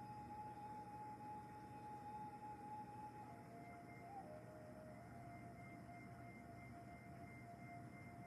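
Faint ambient background music of long held tones; the main note steps down slightly in pitch about three seconds in.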